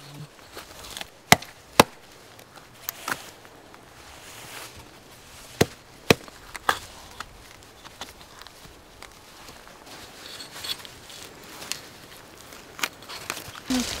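Small axe chopping into the bark of a red cedar trunk in a series of sharp knocks, the loudest two about half a second apart about a second in, with more blows around three and six seconds. The blade is cutting and prying the bark to loosen a strip for harvesting.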